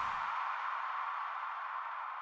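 The end of the song's music fading out: the bass drops away shortly after the start, leaving a thin hiss-like wash in the middle range that slowly dies down.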